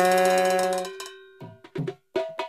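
Edited-in music: a held, pitched sound-effect note that fades out about a second in, followed by background music of quick, light percussion strikes.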